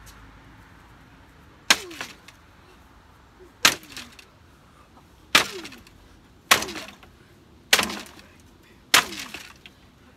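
A wooden frame of two-by-fours being struck hard with a swung hand tool, about six blows one to two seconds apart, as it is knocked apart. Each blow lands with a sharp crack and a short ring that falls in pitch.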